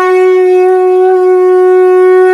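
Conch shell (shankha) blown in one long, steady, loud note.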